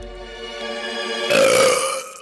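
Cartoon burp sound effect: one short, loud belch from Jerry the mouse after eating a whole sandwich, about a second and a half in. It plays over calm background music with held notes.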